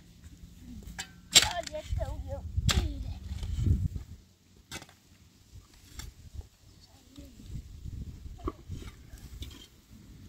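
A long-handled shovel striking and scraping into stony earth in a few sharp hits, the loudest about a second and a half in and another a little over a second later, then fainter strikes later on.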